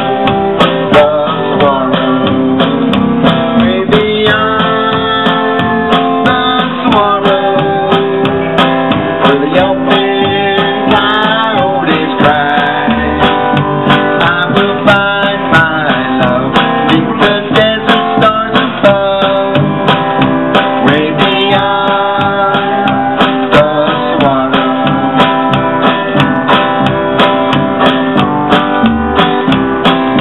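Live acoustic country music: acoustic guitar strummed steadily over an upright double bass, with a regular beat.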